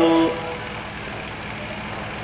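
A man's voice through a microphone holds the end of a word briefly, then a steady low hum and hiss of the sound system carries on with no other event.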